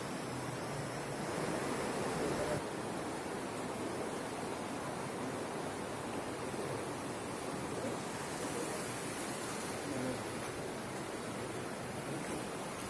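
Steady rush of flowing water in a shallow riverside hot spring, an even noise without breaks whose tone shifts abruptly about two and a half seconds in.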